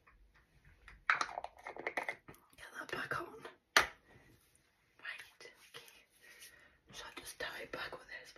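A woman's whispered, hoarse speech from a voice lost to laryngitis, in several short runs. A single sharp click comes a little before four seconds in.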